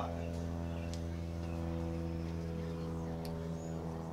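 The supercharged Hemi V8 of a 2011 Ram 1500 R/T idling steadily, with a couple of faint ticks.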